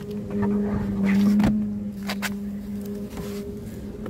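A steady engine hum holding one low pitch, fading out near the end, with a couple of light knocks about one and a half and two seconds in.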